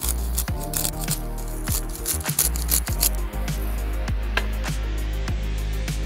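Background music with a steady beat throughout. Over it, a hand pepper mill grinds black pepper in quick scratchy strokes during the first half.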